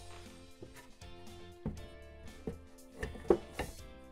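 Soft background instrumental music with held notes. Over it come a few light wooden knocks, the loudest a little past three seconds in, as a wooden shelf board is fitted into a cabinet and set down on metal shelf pins.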